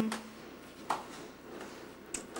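Quiet room tone in a pause between words, with one short faint click about a second in.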